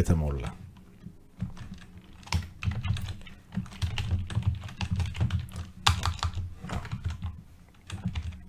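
Typing on a computer keyboard: a run of quick, uneven key strokes starting about a second and a half in.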